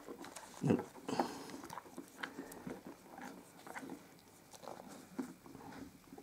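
Quiet handling noises of a small plastic action figure being stood up on carpet: scattered soft taps and clicks, with a couple of louder knocks about a second in.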